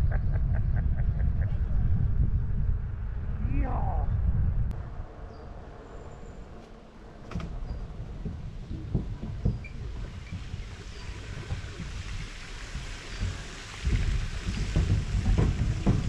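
Heavy wind rumble on the microphone of a moving recumbent trike, with a laugh at the start. From about eight seconds in, the tyres knock irregularly over the planks of a wooden footbridge.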